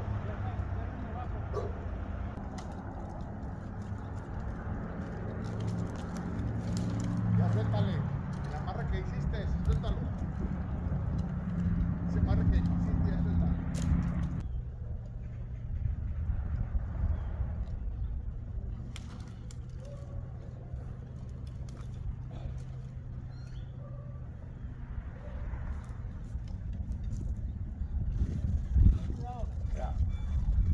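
A chainsaw engine running steadily at low speed in the tree, a constant low drone that thins out about halfway through.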